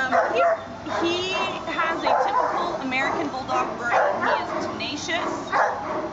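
A dog making short, high-pitched, wavering cries again and again.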